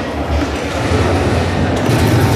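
Steady background din of a large, busy hall: a continuous low rumble with general crowd and machine noise, and a faint click near the end.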